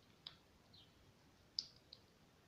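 Near silence: quiet room tone broken by three faint, brief clicks, one about a quarter second in and two close together near the end.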